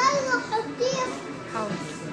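A child's high-pitched voice talking in short phrases over background music.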